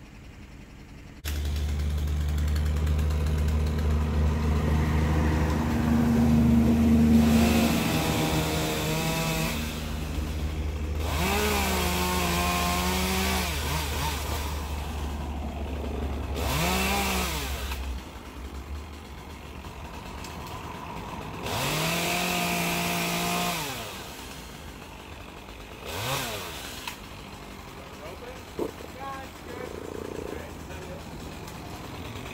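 Chainsaw revved up and back down about five times, each burst lasting a couple of seconds, as tree limbs are cut. A steady low engine drone starts suddenly about a second in and runs under it until about halfway through.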